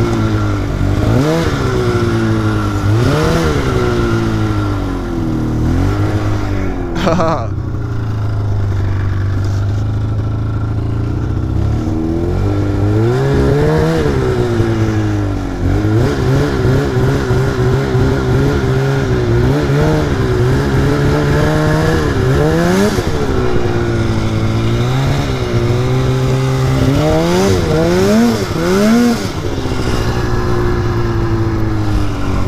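2004 Polaris RMK 800's two-stroke 800 engine revving up and down again and again as the throttle is worked. There is a steadier pull in the middle and several quick revs near the end.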